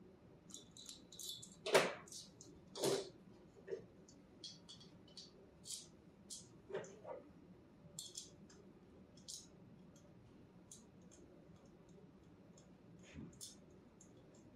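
Small metallic clicks and rattles of a golf driver's adjustable hosel screw being turned with a wrench, as the shaft and driver head are taken apart or put together. Two louder knocks of the club being handled come in the first three seconds.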